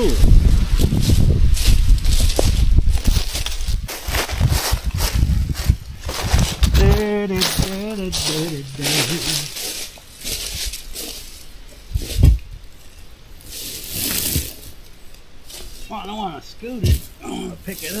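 Dry brush and briars crackling and rustling as they are pushed and trampled through, with a man's long, wavering strained groan about seven seconds in and a few short vocal sounds near the end.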